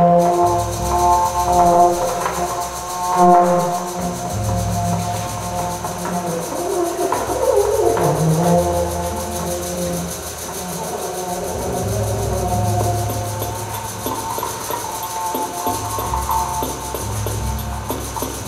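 Live improvised experimental ensemble music: low droning notes that come and go under several held higher tones, with one sliding in pitch about eight seconds in.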